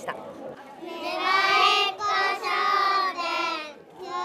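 A group of young children's voices calling out together in unison: three loud, drawn-out phrases in quick succession.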